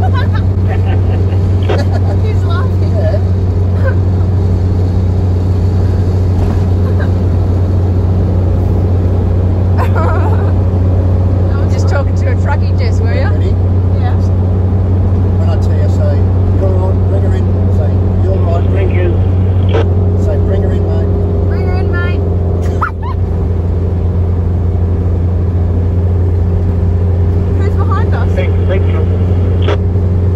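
Steady low drone of a motorhome's engine and road noise inside the cab at highway speed. A road train overtakes partway through. Short snatches of a truck driver's voice come through a UHF two-way radio.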